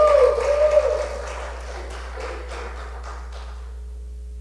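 A wavering voice-like tone and light taps echoing in a large hall, fading out about a second in to a steady low hum.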